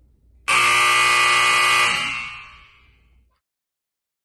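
Game-show style wrong-answer buzzer sound effect: one harsh, low buzz that cuts in about half a second in, holds steady for over a second, then fades away. It marks the wrong guess of coffee for a drink that was chai tea latte.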